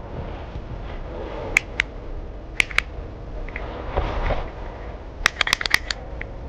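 Sharp small clicks of a cigarette and lighter being handled: a few isolated clicks in the first half, then a quick run of about six clicks near the end as the lighter is struck to light the cigarette.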